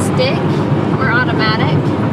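Steady road and engine noise inside a moving car's cabin, under short bits of talk.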